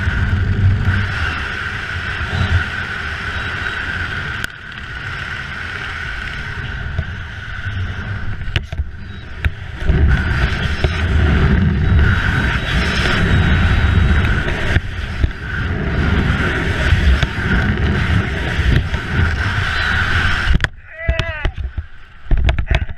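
Wind rushing over and buffeting the microphone of a body-mounted camera during a fast descent under a collapsed, spinning parachute canopy. A steady high whistle runs through the rush, and the low buffeting grows heavier about halfway through. The noise cuts out abruptly near the end.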